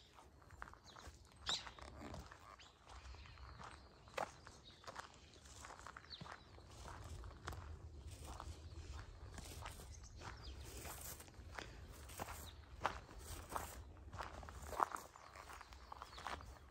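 Faint footsteps of a person walking on a dirt and gravel path, irregular steps about once a second, over a low steady rumble.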